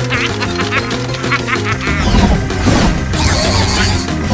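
Cartoon soundtrack music over a steady bass line. In the first two seconds it carries a run of quick, squeaky, quack-like chattering sounds, and a few low thuds follow.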